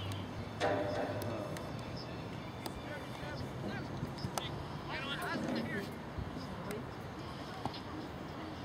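Scattered shouts and calls from soccer players and spectators on the field, too distant to make out, over a steady outdoor background with a few faint knocks.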